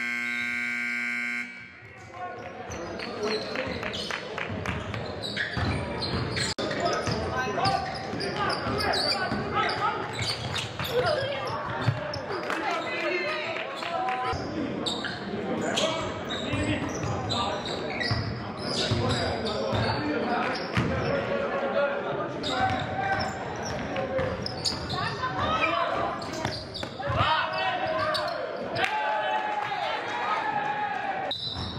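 Live high school basketball game in a large echoing gym: the ball bouncing on the hardwood, with players and spectators calling out throughout. A steady scoreboard buzzer sounds at the very start and cuts off after about a second and a half.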